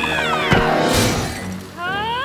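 Cartoon sound effects over music: a rising, squealing yelp, then a crash with a shattering sound about half a second in, and another rising squeal near the end.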